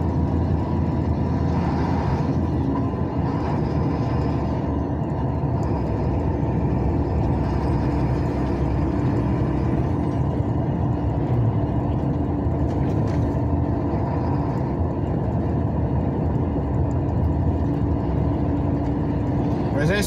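Steady engine and tyre rumble heard from inside a vehicle's cab while driving at speed on a paved highway, with a faint hum running through it.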